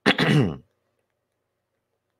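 A man clearing his throat once, a short sound with a falling pitch that lasts about half a second at the start.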